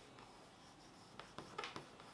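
Faint rubbing of fingertips smoothing a freshly stuck sticker onto a paper sticker-album page, with a few light paper rustles and taps in the second half.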